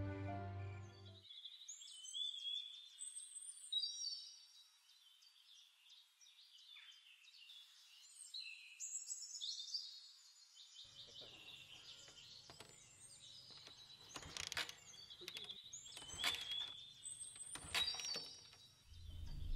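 Faint birdsong: many short, high chirps and whistled phrases, some gliding in pitch, after background music cuts off about a second in. A few sharp clicks or rustles come in the last few seconds over a low hum.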